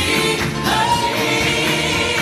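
A live song: a woman singing lead into a handheld microphone, with backing singers and musical accompaniment; she holds a long note about halfway through.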